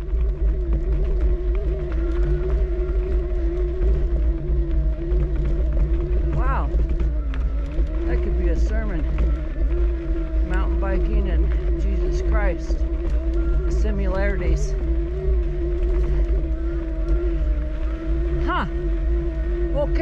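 Electric mountain bike's motor whining steadily at one pitch under load while climbing, over heavy low wind rumble on the microphone. Short squeaky chirps cut in several times.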